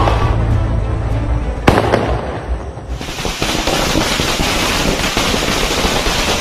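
Firecrackers going off on a street: a single sharp bang a little under two seconds in, then from about halfway a dense, continuous crackle of many small bursts.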